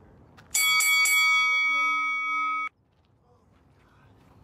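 A bell rung three times in quick succession, its ring held for about two seconds and then cut off suddenly: a HIIT interval timer's round bell signalling the start of a work interval.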